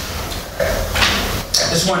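A wine taster slurping a sip of red wine from a glass, drawing air through the wine in a short noisy suck about a second in.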